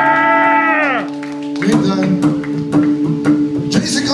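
Live rockabilly band: a held note slides down in pitch and dies away about a second in. Then slapped upright bass clicks and drums pick up a steady beat under an electric guitar.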